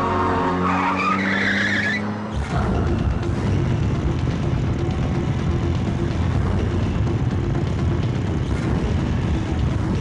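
A car pulling away with a tyre squeal and a slowly rising engine note over the first two seconds. Then, after a sudden change about two and a half seconds in, a group of motorcycles running together in a steady low rumble.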